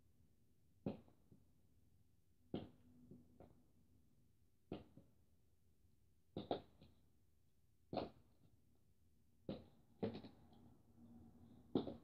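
Plastic markers being flipped and landing on a hard surface: a short sharp clack every second or so, about nine in all, a few followed by a smaller bounce.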